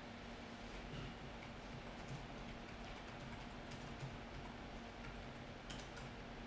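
Quiet room tone with a faint steady hum and a few faint, scattered clicks of fingers handling a smartphone while its power and volume-up keys are held down to boot into recovery mode.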